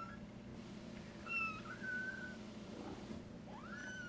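Young kittens mewing: a few short, high-pitched mews, the last one rising in pitch near the end.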